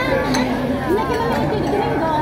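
Indistinct chatter of several voices, with a clink of cutlery on a plate about a third of a second in.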